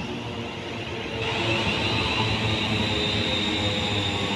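A London Northwestern Railway Class 350 Desiro electric multiple unit running slowly alongside the platform: steady wheel and motor noise with a low hum, and a high hiss with a faint high whine that grows louder about a second in.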